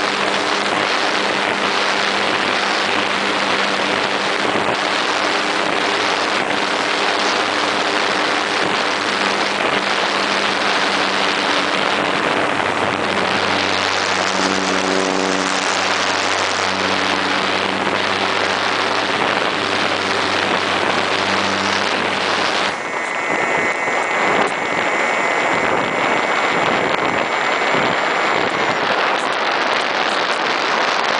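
Wind rushing over the onboard camera's microphone on a Slow Stick electric RC plane in flight, with the steady hum of the motor and propeller underneath. About three-quarters of the way through, the propeller hum stops abruptly as the propeller comes off. It leaves the air rush and a thin, high, steady whine from the motor spinning free, which cuts out near the end.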